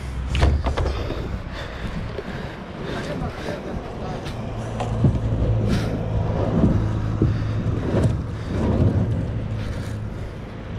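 Plastic sit-on-top kayak being dragged by its end handle over a concrete boat ramp: irregular scrapes and knocks, over a steady low motor hum.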